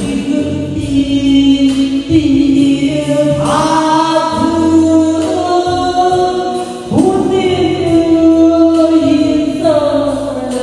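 A woman singing a slow song into a handheld microphone over instrumental accompaniment, holding long notes in three phrases.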